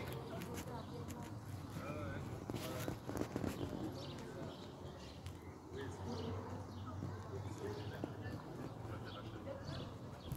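Faint, indistinct voices with scattered knocks and clicks, over a steady low hum.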